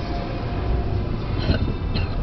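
Steady low rumble of a car driving, its engine and tyre noise heard from inside the cabin.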